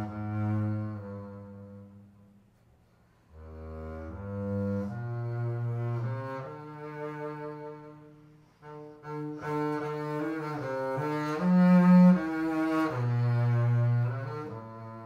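Solo double bass played with the bow: a line of sustained low notes, with a short pause about two seconds in, then phrases that grow louder, the loudest near the end.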